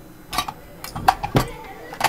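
A handful of sharp metal clicks and clinks from a lever door lock being taken apart by hand, as its lever handle is removed from the lock body.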